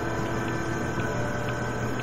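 Steady hiss and low hum of a home cassette-tape voice recording, with a thin high whine and a few faint ticks.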